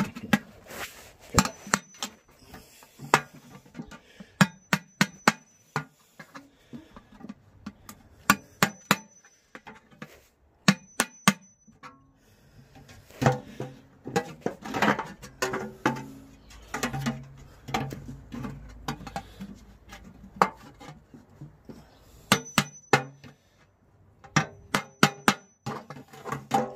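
Hammer blows on a steel hole punch, driving drainage holes through the base of a galvanised metal watering can: groups of sharp metallic taps, several strikes to each hole, some with a brief high ring.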